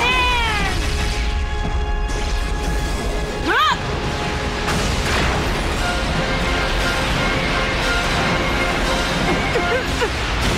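Dramatic anime battle score with sustained tones. It is cut by a high, strained yell at the very start and another about three and a half seconds in, as the goalkeeper strains to summon his technique.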